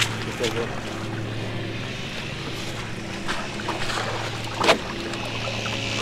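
A seine net being handled by people wading in shallow water: occasional short splashes and rustles, with one louder splash about three quarters of the way through, over a steady low hum. A short laugh comes near the start.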